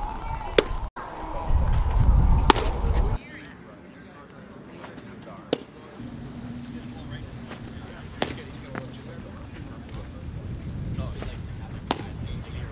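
Sharp pops of pitched baseballs striking a catcher's leather mitt, the loudest about two and a half seconds in, over outdoor field noise with distant voices. About three seconds in the background drops to a quieter hum, with a few fainter clicks.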